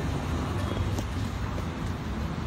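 Steady low rumble of outdoor background noise, with one faint click about a second in.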